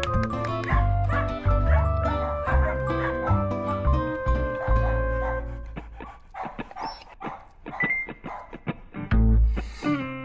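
Background music with a melody and bass line fills the first half. It thins out about halfway through, giving way to a run of short dog barks and yips.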